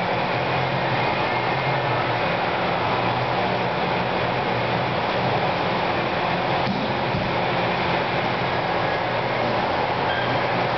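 Steady ventilation noise: an even rush with a low hum beneath it.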